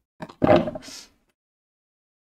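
Heavy metal scissors set down on a wooden tabletop: a small click, then a clunk and a brief scrape, all within the first second.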